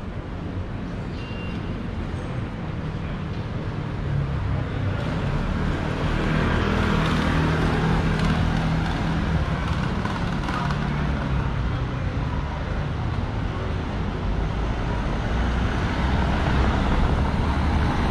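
City street traffic: motor vehicles running along a cobblestone street. The traffic noise gets louder about four seconds in, with a low engine hum strongest around the middle.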